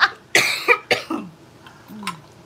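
A woman coughs hard about a third of a second in, followed by a couple of short vocal sounds that fall in pitch as her laughter trails off.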